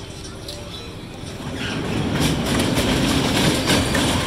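Kiddie dragon roller coaster's train of cars rolling along its steel track, getting louder from about a second and a half in as it comes close, with a run of sharp clicks.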